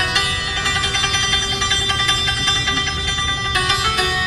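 Persian santur, a hammered dulcimer, played in fast runs of rapidly repeated, ringing notes. A new set of notes comes in about three and a half seconds in.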